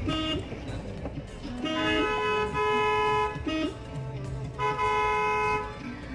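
A car horn gives two long, steady blasts, the second a little shorter, over background music.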